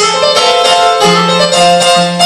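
Yamaha electronic keyboard playing an instrumental passage with a piano sound, melody notes held over a bass line that steps from note to note.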